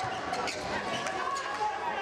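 Sharp smacks of a volleyball being struck or bouncing on the court, several in quick succession, over shouting voices that echo around the sports hall.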